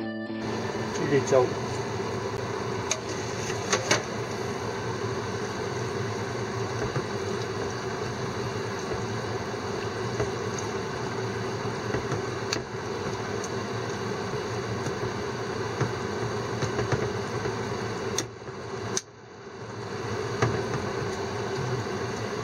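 A steady hum runs under a pan of beef-tendon stew being stirred on a gas stove, with a few sharp clinks of a metal ladle against the pan; the hum dips briefly about 18 seconds in.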